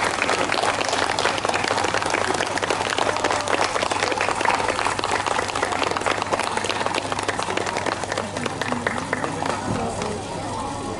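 Audience applauding, a dense patter of many hands clapping that eases a little near the end.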